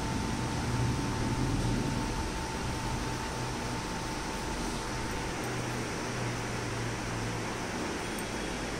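Steady background hum and even hiss, like a running fan or air conditioner, with a faint high steady tone that stops about five seconds in.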